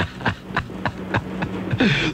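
Laughter in short breathy pulses, heard through an AM radio broadcast taped off the air, with a steady low hum beneath.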